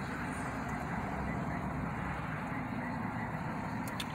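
Steady low rumble of a vehicle heard inside a pickup truck's cab, with one brief click near the end.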